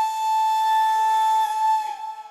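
Background drama music: a flute-like wind instrument holding one long, steady note that fades out near the end.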